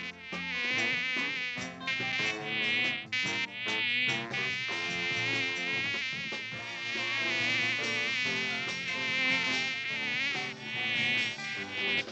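Cartoon sound effect of a housefly buzzing as it flies about, its pitch wavering up and down continuously, with a few short breaks.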